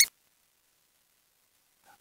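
Near silence: a man's voice cuts off right at the start, and then nothing is heard.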